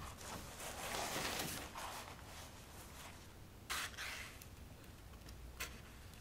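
Large sheets of watercolour paper being handled and turned over: a rustling sweep in the first two seconds, then two short, sharp crackles of paper about two seconds apart.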